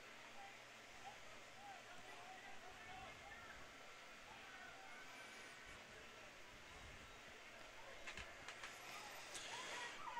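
Faint field ambience: distant, indistinct voices of players and onlookers over a steady low hiss, with a few light knocks near the end.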